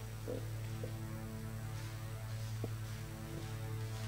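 Steady low electrical mains hum, a buzz with evenly spaced overtones from the church's sound system, with a few faint knocks.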